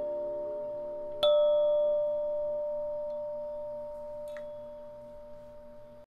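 A bell-like chime struck once about a second in, its ringing tones held and slowly fading, with a faint higher ping near the end.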